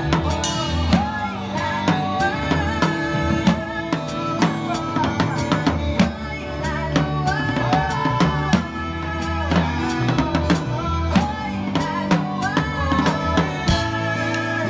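Drum kit played live in a band: a steady run of drum and cymbal hits over bass notes and a wavering melody line.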